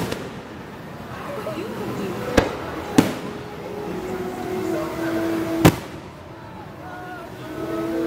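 Aerial fireworks shells bursting overhead: two sharp bangs close together a couple of seconds in, then a third past the middle.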